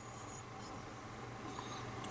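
Quiet room tone: a low steady hum with faint rustling from fingers turning a small die-cast model.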